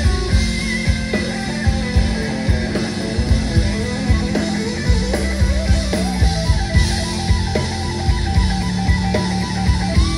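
Live rock trio playing an instrumental passage: electric guitar playing lead lines over bass and a steady drum-kit beat, loud.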